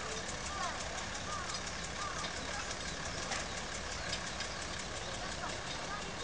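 Engine of a small light-railway locomotive running steadily at a distance as it hauls its train, with faint voices over it.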